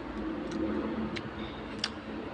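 Quiet room hum with three faint, short clicks spaced across the two seconds.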